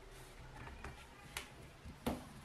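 Faint handling sounds of fingers working a yarn needle and yarn through a crocheted toy: a few soft ticks and light rustles.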